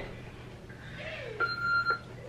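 A single electronic beep from a Darth Vader voice-changer helmet toy: one steady high tone lasting about half a second in the second half, the signal to start talking into the helmet. A short voice sound comes just before it.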